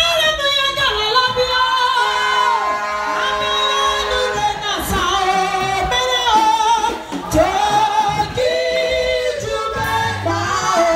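A man singing a gospel praise song into a microphone over a PA system, in long held notes that waver in pitch, with other voices joining in.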